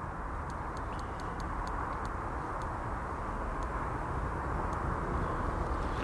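Steady outdoor background noise, a low rumbling haze that grows slightly louder over the few seconds, with faint, irregular sharp ticks.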